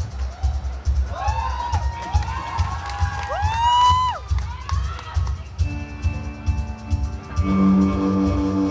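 Live rock band playing: a drum kit beats steadily underneath, with high rising-and-falling tones over it for a few seconds, then held electric guitar and bass chords from about six seconds in.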